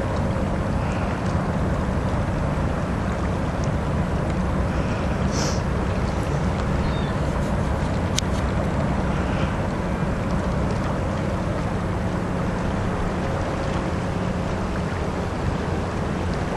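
Steady low rumble of a boat engine, with wind and water noise over it. A brief sharp click about eight seconds in.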